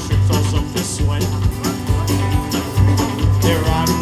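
Country band playing live: acoustic guitar, bass and drums keeping a steady beat.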